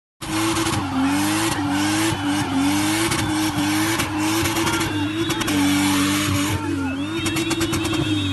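A car engine held at high revs, its pitch dipping and climbing back about once a second, over continuous tyre screech, as in a car spinning (a burnout display). Whistles and shouts come over it in the second half.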